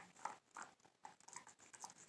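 Faint, scattered clicks of a dog gnawing on a chew bone.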